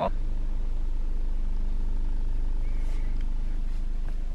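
A steady low mechanical hum, like a motor running, with an even fast pulse and a constant level throughout.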